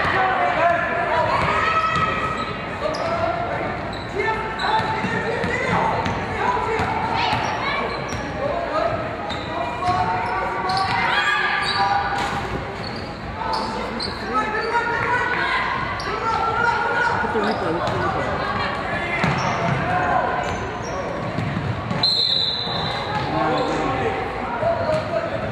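A basketball bouncing on a hardwood gym floor during play, with voices in the gym throughout.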